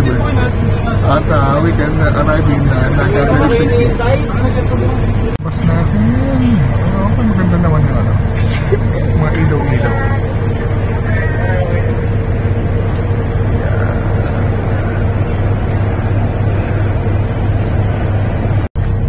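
Steady low hum of a bus's engine inside the passenger cabin, with people's voices talking over it.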